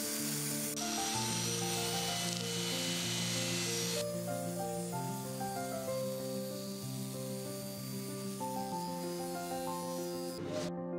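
Background instrumental music of plucked, sustained notes changing pitch, with a steady hiss of higher noise under it for the first four seconds that cuts off suddenly.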